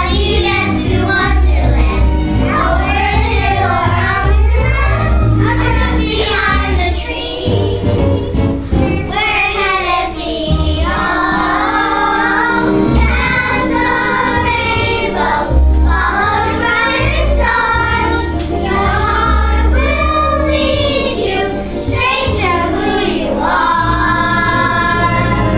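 A group of children singing a song together in chorus over instrumental accompaniment with a pulsing bass.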